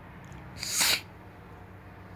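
A single sneeze-like burst of breath noise, about half a second long, that swells and then cuts off sharply, over a steady low hum.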